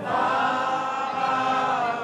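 A large crowd singing together in unison, holding one long note that falls slightly as it ends.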